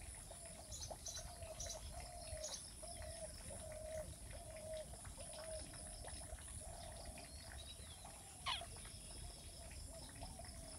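A bird calling a short, low note over and over, about twice a second, with a few higher chirps in the first seconds and one brief, sharper, louder call near the end.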